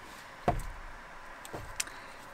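A small metal flower pot set down on a wooden table with a single knock about half a second in, then a few light clicks as it is handled.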